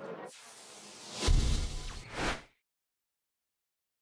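Outro sound effect: a whoosh sweeps in, a deep boom hits about a second in, a second whoosh swells, and the sound cuts off suddenly halfway through.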